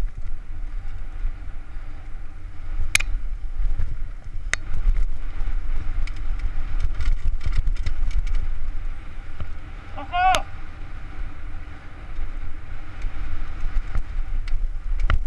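Downhill mountain bike ridden fast over a rocky dirt trail, heard from a helmet-mounted camera: a constant low rumble of tyres and wind on the microphone, with the bike rattling and sharp knocks from hits on rocks, the loudest about three seconds in. A brief shout about ten seconds in.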